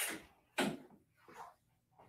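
Sandblasting cabinet's door being opened: two short scraping knocks about half a second apart, then a fainter one.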